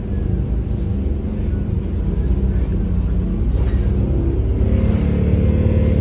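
Steady low rumble of a city bus on the move, heard from inside the cabin, with background music underneath.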